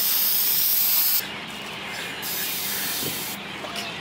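Aerosol spray can hissing as it is emptied into a plastic bag: a strong steady hiss that drops abruptly to a weaker hiss about a second in, then fades out near the end.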